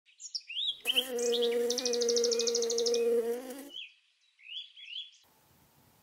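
A bumblebee buzzing: a steady hum about three seconds long that starts and stops abruptly. Birds chirp before and after it, and a quick high trill runs over the middle of the buzz.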